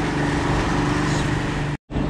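Boat engine running steadily while under way at trolling speed, a constant low hum with wind and water noise over it. The sound drops out abruptly for a moment near the end.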